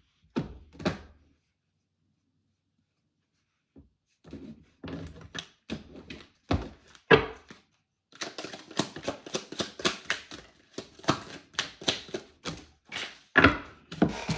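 A deck of oracle cards being shuffled by hand. A couple of soft knocks, then near silence for a few seconds. From about four seconds in there is a run of short clicks that becomes a fast, dense clatter in the second half, with one louder slap near the end.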